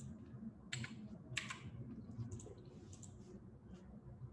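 Typing on a computer keyboard: faint key clicks, two sharper ones about a second and a second and a half in, then a run of lighter taps.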